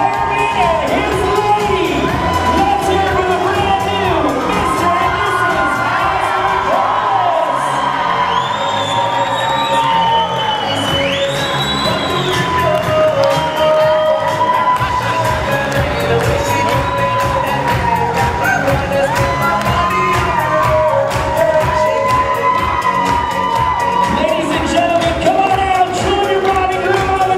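A crowd of wedding guests cheering, clapping and shouting over loud dance music with a steady beat, with high cheers rising and falling around eight to twelve seconds in.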